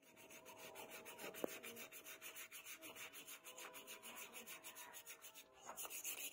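Faint hand sanding of a wooden knife handle with sandpaper, in quick, even back-and-forth strokes, with one small click about one and a half seconds in.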